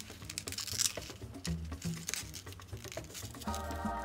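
A stiff paper strip being folded and creased by hand, with short crisp rustles and clicks of the paper, over background music with a steady low beat; a melody comes in about three and a half seconds in.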